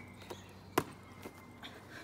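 A hand slapping a Gaelic football: one sharp slap about a second in, with a few fainter taps around it.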